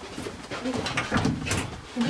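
Low, muffled murmuring from a person's voice, a few short bent-pitch sounds in a small room, mixed with short rustles and clicks.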